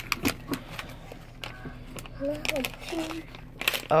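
A plastic gum bag being handled and opened: crinkling and scattered light clicks, with low murmured voices around the middle.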